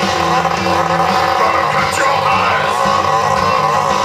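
Rock band playing a loud distorted electric guitar riff with no singing, the notes changing every fraction of a second.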